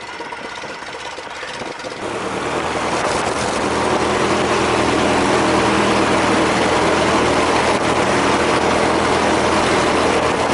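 Stampe SV4B biplane's engine and propeller heard from the open cockpit, running at low power and then, about two seconds in, opening up over a couple of seconds to a loud, steady full-power run for the takeoff roll on grass.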